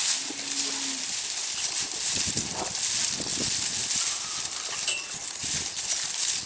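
Cattle pulling at and chewing dried tree hay, leafy ash and elm twigs, making a dense, continuous crackling rustle of dry leaves and snapping twigs. A short low tone sounds about half a second in.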